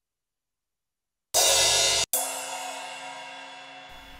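Sampled crash cymbal from an FL Studio drum kit previewed twice, starting about a second and a half in: the first hit is cut off after under a second by a second hit, which rings and fades before stopping short.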